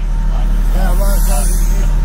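Steady, loud low rumble on board a boat at sea, with faint voices in the background.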